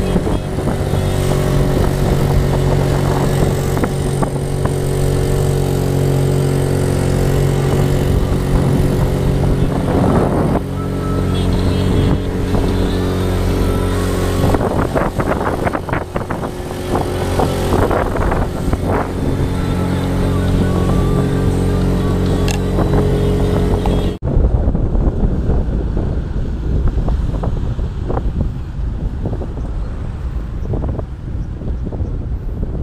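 A boat engine runs steadily at speed, with wind and rushing water as the boat cuts across open water. About three-quarters of the way through, the sound changes abruptly to the lower, duller rumble and wind noise of a vehicle driving along a road.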